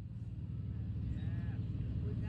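Outdoor background noise: a steady low rumble that rises slightly, with a few faint high chirps over it.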